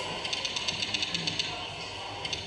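Rapid keyboard-typing clicks, about ten a second, played as a sound effect over a hall's loudspeakers while text types itself onto the screen. They stop about one and a half seconds in.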